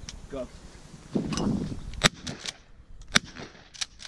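Two shotgun shots about a second apart, fired at a pair of hand-thrown clay targets, each a sharp report, the second slightly louder, with a few fainter clicks after them.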